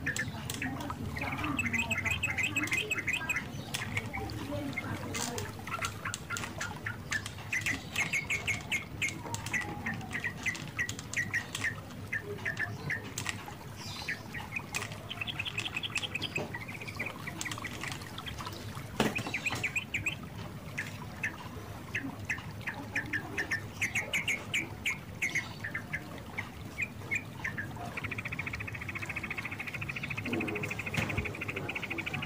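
Small birds chirping in the background in rapid, repeated trills, with one sharp click about two-thirds of the way through.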